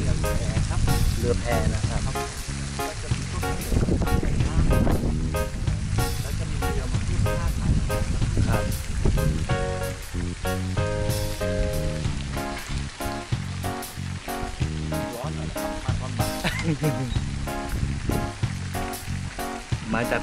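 Music playing, with a short spoken remark about a second in.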